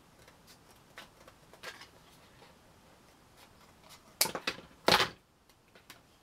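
Small pieces of white card being handled on a craft desk: light taps and rustles, then a cluster of sharper clicks and knocks about four seconds in, the loudest just before five seconds.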